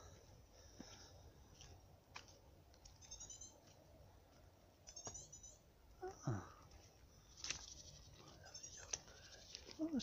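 Eurasian blue tit calling: several short rapid series of high-pitched chirps, with single sharp high notes between, an unusual call for a blue tit. A short falling human exclamation about six seconds in.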